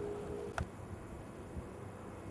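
Faint steady hiss of an air traffic control radio receiver between transmissions. A thin steady tone left from the last transmission stops about half a second in, followed by a single short click.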